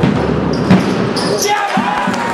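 A basketball bouncing on the court, with one sharp bounce standing out about a second in, over a steady murmur of voices from the crowd.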